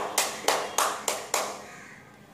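A few sharp hand claps, about three a second, fading out about a second and a half in.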